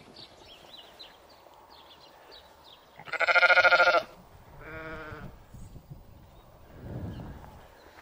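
Valais Blacknose sheep bleating: one loud, quavering bleat about three seconds in, lasting about a second, then a shorter, fainter bleat just after.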